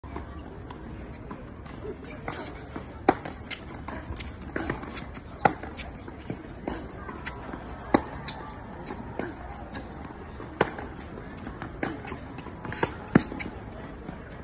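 Tennis rally: a tennis ball struck by the near player's racket, a sharp loud hit roughly every two and a half seconds, five times. Fainter knocks from the far player's racket and the ball come in between.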